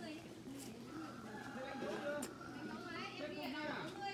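Indistinct conversation in Vietnamese, with people talking at a distance.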